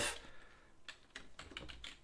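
Computer keyboard typing: a run of faint, quick keystrokes.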